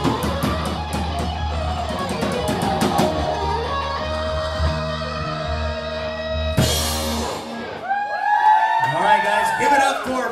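Live rock band with electric guitars, bass and drums finishing a song: a held chord, a final crash about two-thirds of the way in, then the bass stops. Voices take over near the end.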